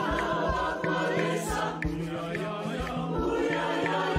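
Mixed choir of women's and men's voices singing, with a pair of wooden claves tapping a steady beat of about three strikes a second.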